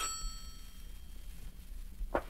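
An old-fashioned telephone bell ringing, a radio-drama sound effect: the ring dies away just after the start, leaving a quiet pause between rings.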